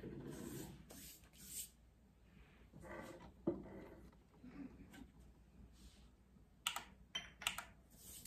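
Faint, scattered clicks and light knocks of objects being handled at a kitchen counter, with a sharper knock about halfway through and a quick run of clicks near the end.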